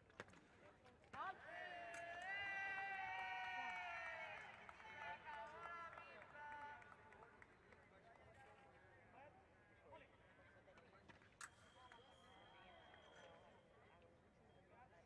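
A young woman fencer's long, high-pitched shout of about three seconds, starting about a second in: a sabre fencer's yell as a touch is scored. After it the hall is quiet, with a faint steady high tone near the end.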